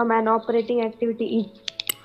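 A voice speaking, then near the end a quick run of about four sharp clicks from the computer being used to present the slides.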